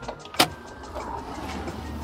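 A car door shutting with one sharp knock about half a second in, followed by the low, steady rumble of the car.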